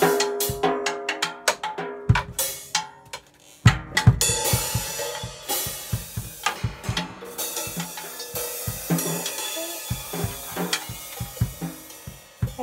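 Acoustic drum kit played with sticks: quick strokes on the drums, a brief pause about three seconds in, then a loud hit with the bass drum. Playing goes on with cymbals ringing steadily under repeated drum strokes, thinning out near the end.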